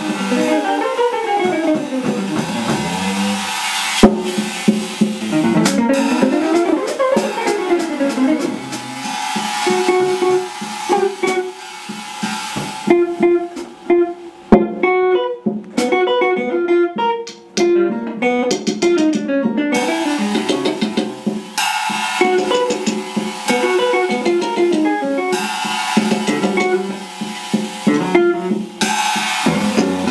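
Improvised small-group jazz: an archtop electric guitar played through an amp, with a drum kit and cymbals. The drums drop out from about 13 to 20 s into a stretch of guitar alone, then come back in.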